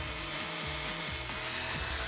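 Handheld electric round-blade fabric cutter running steadily as it cuts through Nomex racing-suit fabric, under background music.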